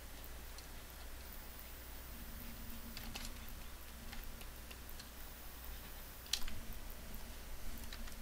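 Sparse faint clicks of a computer keyboard over a low steady hum, with one sharper click about six seconds in.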